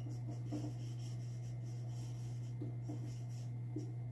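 Marker pen writing on a whiteboard: short, faint squeaks and scratches of the pen strokes, over a steady low hum.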